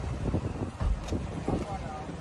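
Wind and handling noise on a phone microphone carried through a crowd: a low, uneven rumble with irregular bumps, and faint voices now and then.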